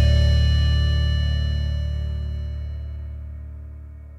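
A band's final held chord, guitar on top, ringing out and fading steadily away at the end of a song.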